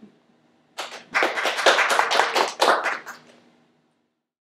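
Audience applauding, starting about a second in and dying away near the end.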